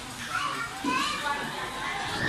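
Children playing: young children's voices chattering in short, high snatches.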